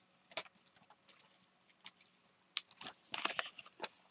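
A sheet of paper crackling as it is peeled off a paint-covered Gelli gel printing plate and stencil. There are faint ticks and rustles at first, then a denser run of crisp crackles in the last second and a half.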